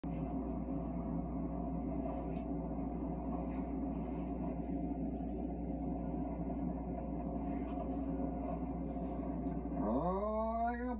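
Domestic cat purring steadily at close range: a continuous, even rumble with no breaks.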